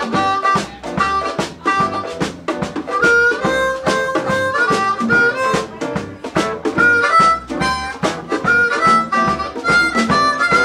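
Amplified blues harmonica soloing, the harp cupped against a handheld microphone, over a live band's drum kit, electric guitar, piano and bass.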